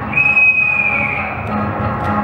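A whistle blown once: a single shrill, steady blast lasting about a second that dips slightly in pitch as it ends, over ragtime dance music.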